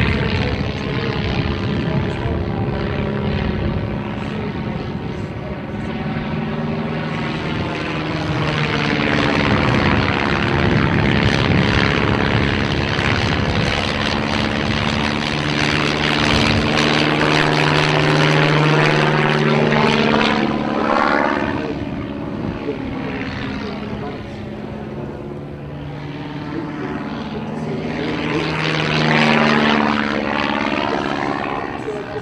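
De Havilland Tiger Moth biplane's four-cylinder Gipsy Major engine and propeller running through an aerobatic sequence, the engine note rising and falling in pitch and loudness as the plane manoeuvres, loudest through the middle and again near the end.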